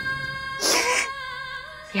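A woman's tearful sob, one short wailing cry with a falling pitch about half a second in, over sustained background music.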